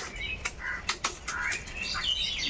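Chain and Shimano Tourney derailleur of a 21-speed mountain bike, the crank turned by hand with the bike on its stand: the chain runs with a whirring sound and there are several sharp, uneven clicks as it is shifted through the gears. The shifting works properly.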